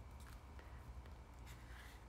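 Faint scratching of a pen writing on a spiral notebook page, over a low steady room hum.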